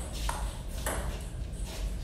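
Table tennis ball being hit back and forth in a rally: three sharp clicks of ball on bat and table, spaced roughly half a second to a second apart.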